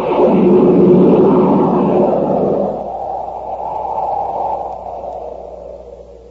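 A radio-drama sound effect: a noisy roar that swells in fast, peaks about a second in and fades away slowly over the next few seconds, marking the return from the commercial to the story.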